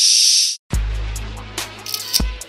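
A burst of TV-static hiss that cuts off after about half a second, then background music begins: a hip-hop beat opening on a long, deep, slowly fading bass note with light ticks over it.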